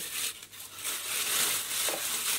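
Thin plastic freezer bag rustling and crinkling as it is held open and sliced porcini mushroom pieces are dropped into it by hand.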